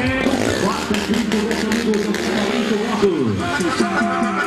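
An announcer's voice over a loudspeaker system, talking in drawn-out tones over music.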